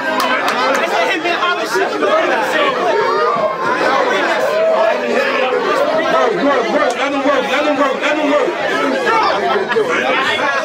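A crowd of people shouting and talking over each other in an excited reaction to a rap battle punchline, many voices overlapping without pause.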